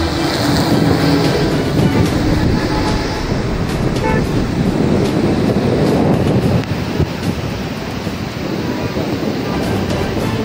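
Steady roar of floodwater pouring through a dam's open spillway gates and rushing down the swollen river.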